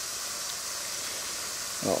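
A steady, even hiss of background noise, with no distinct event in it; a man's voice begins near the end.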